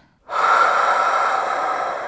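A person's long, slow breath out through the mouth, the "big breath out" of a deep belly-breathing exercise. It starts about a third of a second in and slowly fades.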